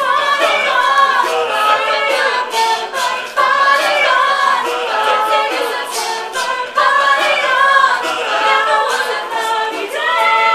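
A mixed-voice a cappella group singing in harmony, with a loud new phrase coming in about every three and a half seconds.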